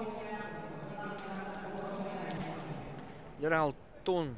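A man's voice holding one long, drawn-out note for about three seconds, then a short call that falls sharply in pitch near the end. A few sharp smacks sound in the middle.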